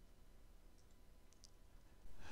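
Near silence: room tone with a few faint clicks, about a second in and again shortly after.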